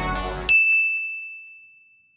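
Music cuts off about half a second in, and a single high ding rings out and slowly fades away.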